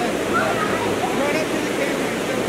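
Shallow creek rapids rushing steadily, with faint distant voices of people on the bank.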